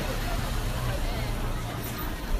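A van driving slowly past close by, a steady low engine and tyre rumble, over the chatter of a crowd in the street.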